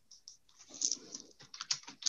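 Typing on a computer keyboard: a couple of keystrokes at the start, then a quick run of keystrokes from about half a second in.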